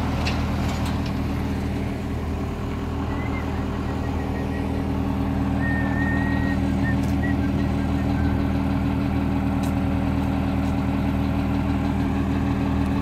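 Heavy vehicle engine idling steadily, an even low hum that holds one pitch throughout, with a few light clicks in the first second.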